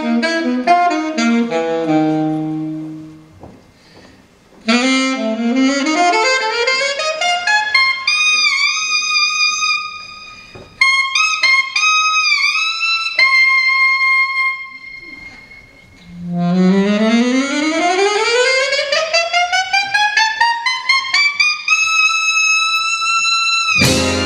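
Alto saxophone playing alone: quick runs broken by short pauses, held high notes that bend in pitch, then a long rising glissando up to a held high note near the end.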